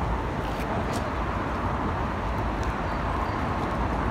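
Steady street traffic noise: a continuous low rumble and hiss of road traffic, with a couple of faint clicks in the first second.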